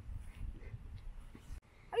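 Low, uneven rumble of wind on the microphone with a few faint clicks, cut off abruptly about one and a half seconds in. A boy's raised voice begins just at the end.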